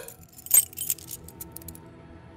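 Metal door hardware being worked: one loud sharp click about half a second in, then a short run of lighter metallic clicks and jingles, as of a door latch and lock being fastened.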